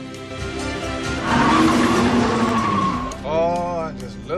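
A car engine revving hard at full throttle with tyre squeal, loudest in the middle, over orchestral film music. Near the end a voice cries out.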